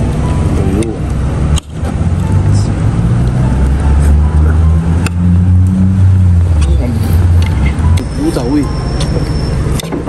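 A car engine running close by, a low rumble that swells about three seconds in and fades out about eight seconds in, with voices in the background.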